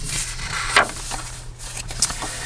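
Paper and cardstock pages of a handmade journal rustling and brushing under hands as they are handled and turned, with a brief sharper rustle just under a second in, over a low steady hum.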